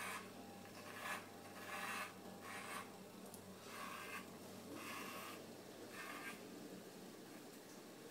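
Electric pet clippers running with a faint steady hum while their blades rasp through a dog's tail fur in repeated strokes, roughly one a second.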